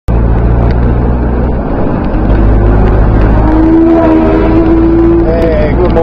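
Cabin noise of a moving 4WD: a steady, loud, low rumble of engine and road noise. A steady tone is held for about two seconds in the middle.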